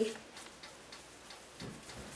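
Faint handling sounds of hands shaping a ball of stiff flour dough over a wooden board: light scattered ticks, with a soft thump about one and a half seconds in.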